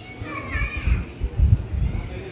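Background chatter of people's voices, including a child's high voice, in the first second, with a few low thumps.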